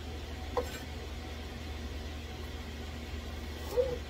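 Steady low hum of fans running in a small room, with one brief light knock about half a second in.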